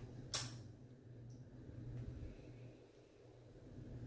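A single sharp click of wargame pieces being handled on the table, about a third of a second in. Under it runs a faint steady low hum.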